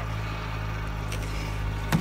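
Steady low hum of a running engine, with one sharp knock just before the end.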